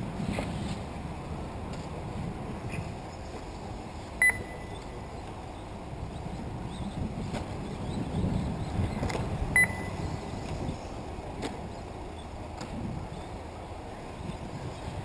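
Two short electronic beeps about five seconds apart, typical of the lap-counting system at an RC car race signalling a car crossing the timing line, over steady low outdoor background noise.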